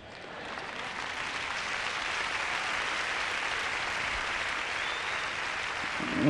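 A large congregation applauding. The clapping builds over the first second and then holds steady.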